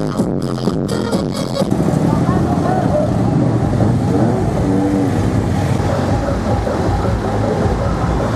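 Electronic dance music that cuts off about a second and a half in, giving way to the steady noise of slow, congested street traffic: car, bus and motorbike engines running with people's voices mixed in.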